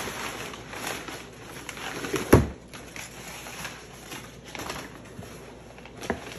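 Brown packing paper rustling and crinkling as it is pulled out of a cardboard shipping box, with one sharp knock about two seconds in.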